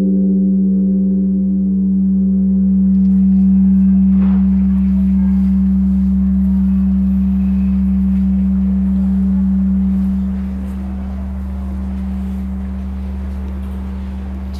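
Large bronze temple bell ringing on after a strike: one steady low hum with a slow wavering pulse in its upper ring, slowly fading and dropping in level about ten seconds in.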